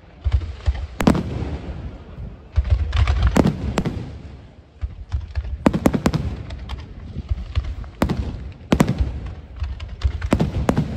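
Aerial firework shells bursting in quick succession: a run of sharp bangs, some in rapid clusters, with continuous crackling and a deep rumble between them.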